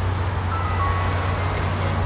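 Steady low hum of a running vehicle engine, with faint held musical notes coming in about half a second in.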